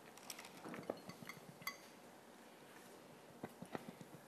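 Light clicks and clinks of the delivery tube tapping the glass petri dish of ice while it is positioned by hand. A brief ringing glassy clink comes about halfway through, and two sharper taps come near the end.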